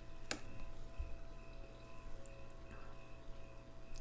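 Oracle cards handled on a cloth-covered table: one sharp click about a third of a second in, then a soft low thump about a second in, over a faint steady room hum.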